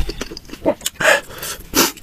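Close-miked mukbang eating sounds: two loud airy slurps, about a second in and again near the end, with small clicks of utensils between them.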